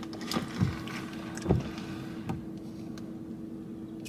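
Steady low hum inside a parked car's cabin. Over it are a few soft thumps about half a second and a second and a half in, and a light click a little after two seconds, from a takeout bag and an iced-drink cup being handled.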